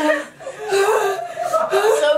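Two women laughing and crying out, their mouths burning from eating scotch bonnet peppers.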